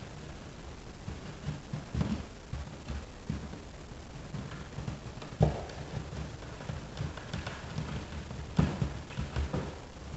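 Plastic electrical box extension ring being handled and pushed into an outlet box by hand: scattered light clicks and knocks of plastic on plastic. The sharpest snap comes about halfway through, and another near the end.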